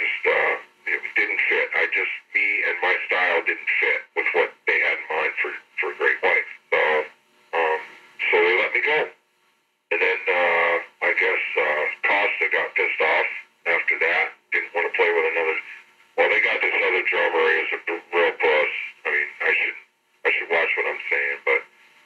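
Speech only: a man talking in an interview, with a short pause about nine seconds in.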